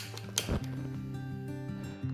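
Background music, with two sharp clicks in the first half-second as the gas hob is switched on and lit, followed by a short low thump.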